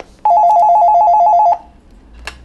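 Panasonic electronic desk telephone ringing with an incoming call: one rapidly warbling two-tone ring, a little over a second long, that stops abruptly.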